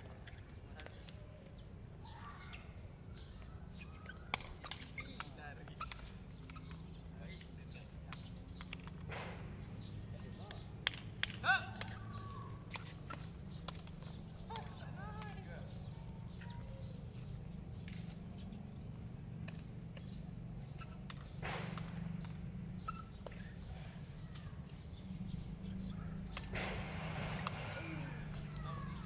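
Sharp smacks of a sepak takraw ball being kicked, a dozen or so scattered through, the loudest about eleven seconds in, over a steady low rumble and faint distant voices.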